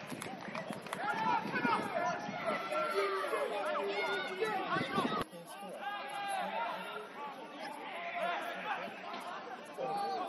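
Overlapping shouts and chatter of footballers and spectators around the pitch, heard from a distance with no clear words. The sound changes abruptly a little past halfway, where the footage is cut.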